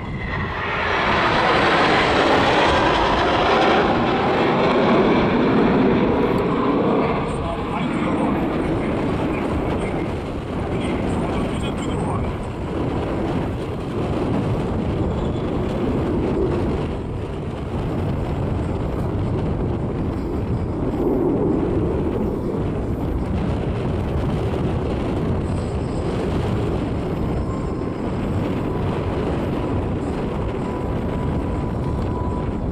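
Jet roar of an eight-ship formation of KAI T-50 trainer jets, each with a single General Electric F404 turbofan, flying past. It is loudest over the first several seconds, with a pitch that falls as the formation passes, then continues as a steadier, lower rumble.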